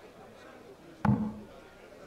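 A single steel-tip dart striking a Blade bristle dartboard about a second in: one short, sharp thud against quiet hall ambience.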